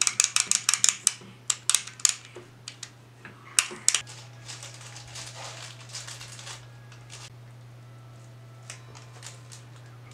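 Sharp clicks and crackles from an electric guitar's hardware being handled and adjusted, many in the first second and scattered until about four seconds in, then a brief hiss. A steady low hum runs under it all: the kind of unwanted noise that gets in the way of recording.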